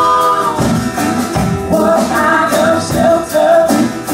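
Live band playing with several voices singing together over acoustic guitar, bass and hand percussion. A long held sung note ends about half a second in, and the voices then move into a rhythmic line.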